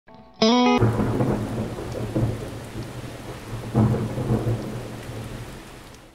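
Thunderstorm sound effect: steady rain hiss with thunder rumbling, swelling a few times and fading out toward the end. A brief musical note opens it.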